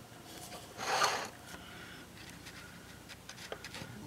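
A single short rasping pull of the recoil starter on a small two-stroke pole saw engine, spark plug out, heard about a second in, followed by a few faint clicks of handling.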